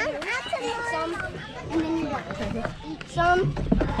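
Indistinct talking and calling by a child and adults, with a low rumble near the end.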